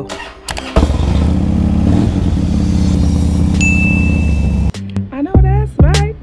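A motorcycle engine catches about a second in and idles steadily with an even firing pulse. It cuts off abruptly near the end, where music with a beat takes over.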